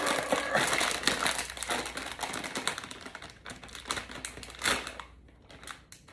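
Crinkly snack-chip bag crackling as it is wrestled and torn open, a dense run of crinkles that thins out, with one sharp crackle near the end.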